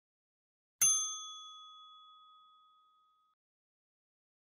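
A single bright bell-like ding, the notification-bell sound effect of an animated subscribe button. It strikes about a second in and rings out, fading away over about two and a half seconds.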